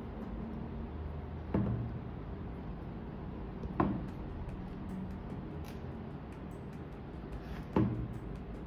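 Three short knocks, a couple of seconds apart, of a hard polyester sculpture being set against and moved on a tabletop while it is painted.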